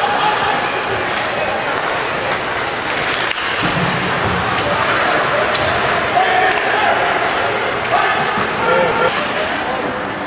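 Ice hockey arena din: a crowd's indistinct voices and calls over a steady hubbub, with an occasional knock from play on the ice.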